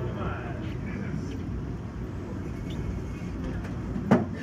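Faint background conversation and room noise in a small dining room, with no music playing.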